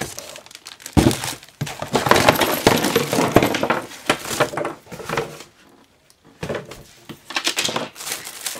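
Cellophane-wrapped craft packages and cardboard boxes crinkling and rustling as they are handled, with a knock about a second in and a short lull about six seconds in.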